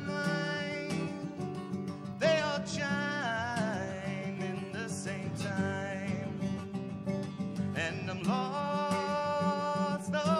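A man singing long, wavering notes over a steadily strummed Larrivée acoustic guitar, two vocal phrases rising in, about two seconds in and again near the end.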